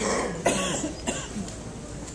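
A person coughing, about three coughs in quick succession within the first second or so, the loudest about half a second in.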